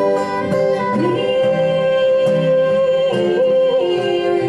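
Live acoustic band playing: strummed acoustic guitars under a long held melody note that slides up about a second in and wavers near the end.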